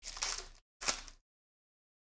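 Foil card-pack wrapper being torn open by hand: two short crinkling rips, the second just before a second in.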